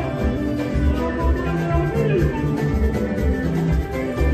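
Live Congolese rumba band music: guitars playing over a steady bass and drum beat.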